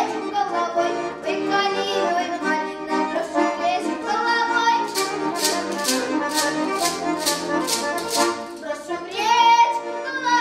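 Button accordion playing a Russian folk tune with a girl singing. About five seconds in, a wooden treshchotka plate rattle clacks in a steady rhythm, about three clacks a second, for some three seconds.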